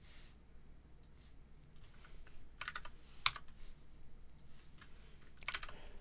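Faint, irregular typing and clicking on a computer keyboard.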